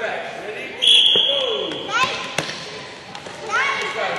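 Basketballs bouncing on a court with sneakers squeaking, including one long high squeal about a second in, and voices in the background.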